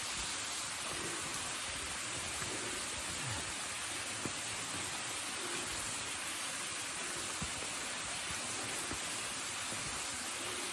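Steady, even rushing noise with a couple of faint short ticks.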